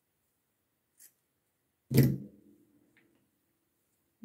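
Steel scissors snipping through a strand of cotton crochet yarn, a faint short snip about a second in. About two seconds in comes a louder single knock with a brief ringing hum after it.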